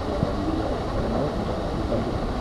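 Steady low outdoor rumble, most likely wind on the microphone, with faint indistinct voices of nearby people in the background.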